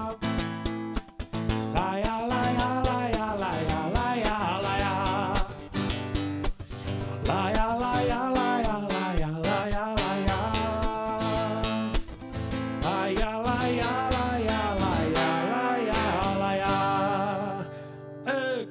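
A man sings a wordless 'la la la' melody over a strummed acoustic guitar, in three or four phrases. The song winds down near the end.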